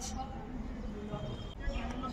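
A gap between speech filled with low, steady outdoor background noise and faint, distant voices.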